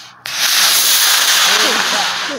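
Estes D12-5 black-powder model rocket motor igniting abruptly and burning with a loud, steady rushing hiss for about two seconds as the Estes Vapor lifts off, the hiss fading out just after the burn.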